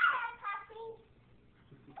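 A young child's high-pitched voice: a brief falling squeal in the first second.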